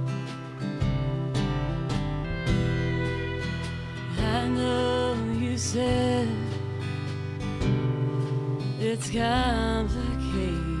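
Live band playing a song: strummed acoustic guitar, electric bass, drums and keyboard, with a woman's lead vocal coming in about four seconds in.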